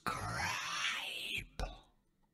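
A recorded male voice played back at half speed in a DAW, the words drawn out into a slow, smeared, moaning sound. It stops about a second and a half in, after one short final syllable.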